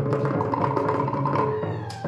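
Tahitian ote'a drumming: wooden slit drums (to'ere) and drum beating a fast rhythm. The strokes thin out for about a second under a held pitched note, then a sharp stroke comes near the end.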